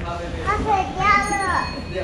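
A little girl speaking in a high child's voice, saying 我要回家了 ("I'm going home"), over a steady low hum.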